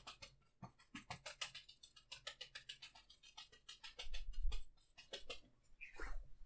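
A one-inch brush loaded with dark oil paint is tapped over and over against wet canvas, stamping in bushes. The taps are quick and dry, several a second, and they stop shortly before the end. A low thump comes about four seconds in.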